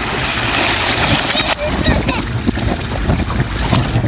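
Pool water splashing and sloshing, strongest in the first second and a half, with wind on the microphone.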